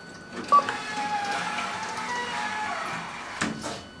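KONE elevator car: a floor button is pressed with a sharp click and short beep about half a second in, followed by a tonal, melody-like sound with several pitches lasting about two seconds, then a couple of knocks near the end.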